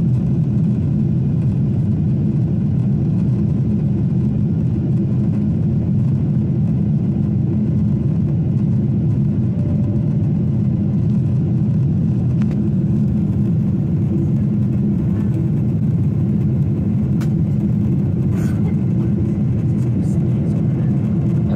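Steady, deep cabin noise of a Boeing 747 in flight: engine and rushing-air noise heard from a window seat, even in level throughout.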